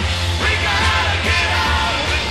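Late-1960s Detroit hard rock band playing at full volume, with a heavy bass line and a voice yelling over the band.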